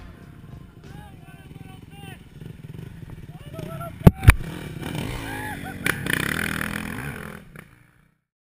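A dirt bike engine running, with indistinct voices over it. Two loud sharp knocks come about four seconds in, as the helmet camera is handled. The sound fades out near the end.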